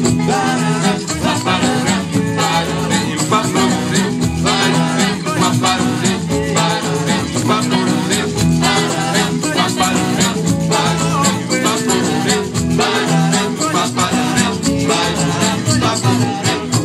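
Live band playing an upbeat Afro-jazz tune: trumpet and trombone, electric guitars, violin and hand percussion with a shaken rattle, under a sung vocal.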